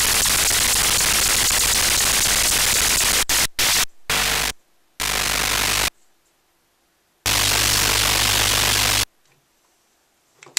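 Handmade Chopper noise instrument putting out a dense wall of static-like noise with a low buzzing hum, then cutting on and off in blocks of a fraction of a second to about two seconds as its 555-timer square-wave gate chops the audio. It falls silent about nine seconds in.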